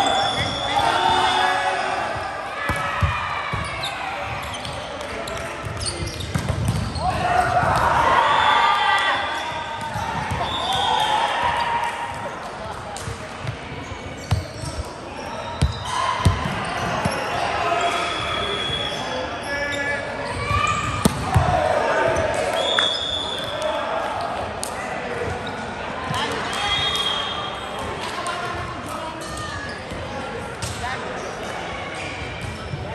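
Volleyball players' voices calling and talking, echoing in a large sports hall, with a few sharp thuds of the ball being hit or bounced on the court.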